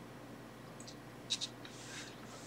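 Faint handling of small plastic tubes of two-part epoxy adhesive: a light click, then two sharp clicks close together about halfway through, and a brief soft rustle near the end.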